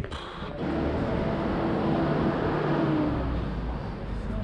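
Wheels rolling over concrete: a steady rumbling noise that starts about half a second in and eases off near the end.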